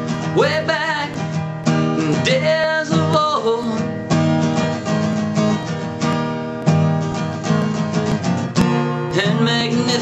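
Acoustic guitar strummed in a steady rhythm. A man's voice sings wordless lines over it in the first few seconds and comes back near the end, with guitar alone in between.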